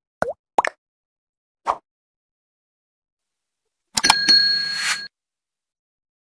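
Animation sound effects: three short pops in the first two seconds, then about four seconds in a click and a bright chime that rings for about a second and cuts off abruptly.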